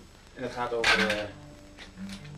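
A short metallic clatter about half a second in, as instruments and gear are handled between songs, with a low instrument note ringing on after it.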